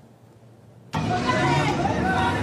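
Almost silent at first, then about a second in a rough, noisy outdoor recording starts abruptly: a vehicle engine running under indistinct voices.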